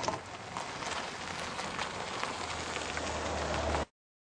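A car approaching on the road outside: a steady hiss with a low rumble that grows louder near the end, then cuts off abruptly.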